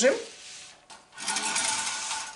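About a second of scraping, whirring handling noise as the camera view is swung over to the serving plate.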